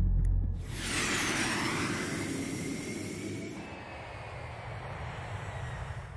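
Sci-fi spaceship engine sound effect: about a second in, a jet-like rush starts with thin high whines sliding down in pitch, then slowly fades away.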